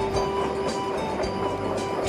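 Passenger train running along the track, heard from inside the carriage: a steady running noise with occasional light clicks from the rails.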